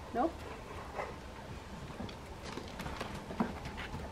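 Rottweiler puppy's paws stepping on and off a wooden pallet platform: a few faint, scattered light knocks and taps.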